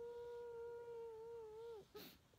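A woman's fake crying: one long, steady, high whimper that dips and breaks off just before the end.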